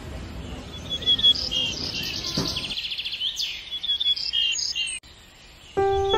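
Songbirds calling over and over, with quick rattling trills and short clear whistled notes, until they cut off about five seconds in. Music starts just before the end.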